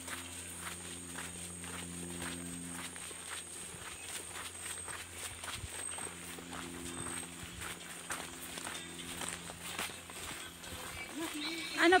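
Footsteps on a leaf-strewn dirt forest trail at a steady walking pace, over a thin, steady, high-pitched tone. A voice comes in right at the end.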